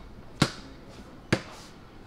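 Basketball dribbled on a hard floor: two bounces, about a second apart.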